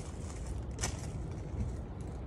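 A low, steady rumble of background noise with one short click a little under a second in.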